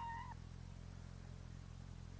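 Faint steady low hum with light hiss. A short wavering, high-pitched cry ends within the first moment.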